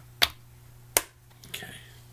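Two sharp plastic clicks, about three-quarters of a second apart, as the pull-tab and cap on a juice carton are worked open, over a steady low hum.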